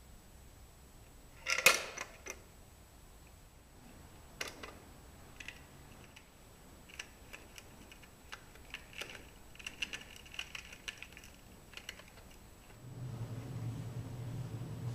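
A tip-style live-catch mouse trap tipping under a mouse and its hinged door snapping shut, a single sharp clack about a second and a half in. Scattered faint clicks and scratches follow as the caught mouse moves inside the closed trap, and a low hum comes in near the end.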